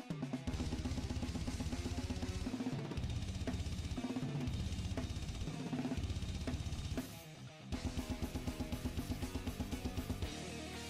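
Metal band recording led by a drum kit playing fast blast beats with rapid bass drum strokes over the band. There is a brief drop about seven seconds in, followed by quick, evenly spaced hits.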